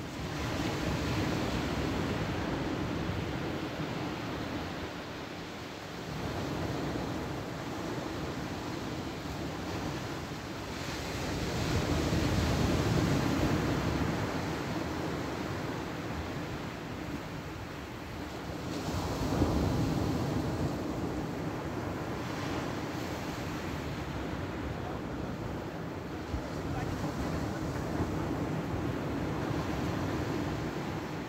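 Sea waves breaking and washing on a shingle beach: a steady surf noise that swells into louder surges about a third of the way in and again about two-thirds of the way in.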